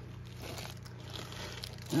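Plastic bag crinkling faintly as a bagged pocket knife is worked into a damp leather holster for wet-molding.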